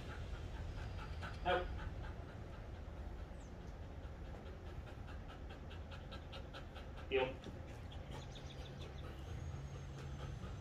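A dog panting in a quick, even rhythm while it sits in front of its handler.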